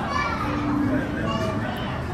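Indistinct children's voices and chatter, with a steady low background rumble.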